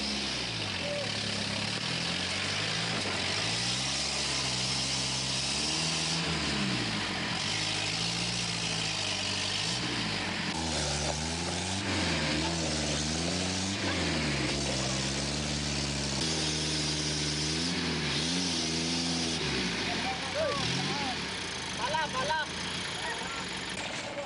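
A loaded truck's engine revving repeatedly, its pitch rising and falling again and again, as it strains to get across a broken stretch of dirt road; the attempt fails. Near the end the engine drops away and short shouts and bangs take over.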